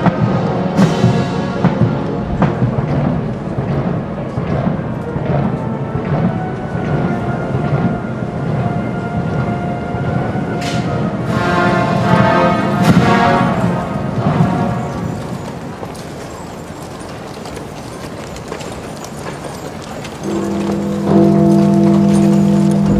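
Military band playing a slow funeral march: spaced muffled drum beats under held brass chords. A loud, sustained low chord comes in near the end.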